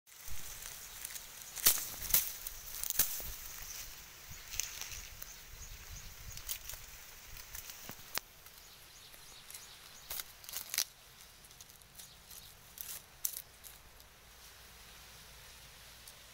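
Dry sugarcane leaves crackling and rustling in scattered sharp clicks, the loudest about two seconds in, over a faint steady outdoor hiss.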